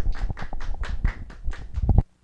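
A few people clapping at an uneven pace, cut off abruptly at the end.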